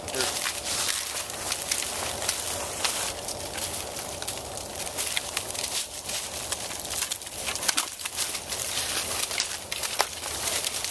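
Dry leaf litter, twigs and bark crackling and rustling: a dense run of small crackles.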